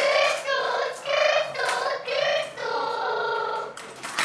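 A child singing in a high voice: a few short notes, then one held note near the end.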